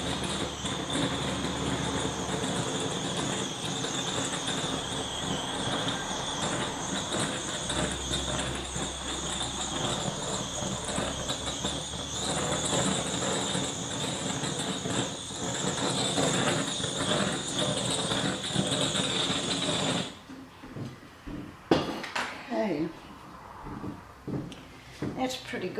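Handheld butane blowtorch burning with a steady hiss that has a high whistle in it, passed over wet acrylic pour paint to pop air bubbles and bring up cells. It cuts off suddenly about 20 seconds in, followed by a few faint knocks.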